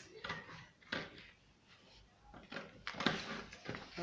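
Scissors cutting through a paper pattern sheet: a handful of short, crisp snips at irregular intervals, with a quieter gap around the middle.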